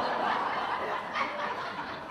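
Theatre audience laughing together, a wave of laughter that peaks at the start and slowly dies down.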